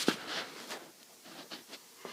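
Faint handling noise from a handheld camera being swung around: soft rustles and a few light clicks, dropping almost to nothing in the middle.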